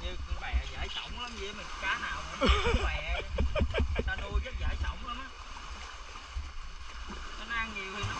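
People talking over splashing water as a freshly caught grouper is rinsed and cleaned by hand, with a steady low rumble underneath.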